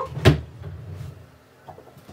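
A dresser drawer being worked: one sharp knock about a quarter of a second in, then a short low rumble as it slides, fading away, with a few faint small clicks near the end.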